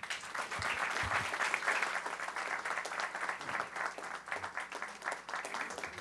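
Audience applauding, many hands clapping at once, starting suddenly and thinning out near the end.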